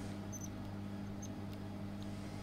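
Steady low electrical hum from the powered equipment, with a few short, high squeaks as a steel Allen key turns in the screws of a handheld laser welding head.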